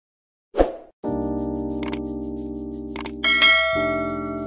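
Subscribe-button animation sound effects over a held synth chord: a short pop about half a second in, two mouse clicks about a second apart, then a bright notification-bell chime a little after three seconds that rings on.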